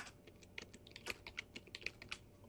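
Computer keyboard typing: a quick, irregular run of faint keystrokes.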